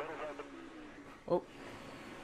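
Speech only: a man's voice speaking faintly, then a short exclaimed "oh" a little after a second in.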